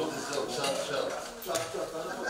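Several people talking at once, with a few light clinks of tableware about halfway through and again near the end.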